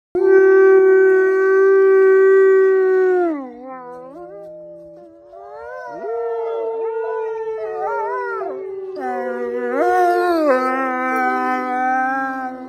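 Wolves howling. One long steady howl drops in pitch and ends about three seconds in. After a quieter stretch, wavering howls come in, with two voices overlapping at different pitches.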